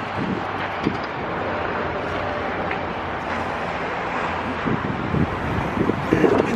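Steady wind noise on the microphone over a constant rumble of city traffic.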